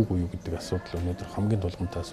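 Speech only: a man talking in Mongolian in a calm, conversational voice.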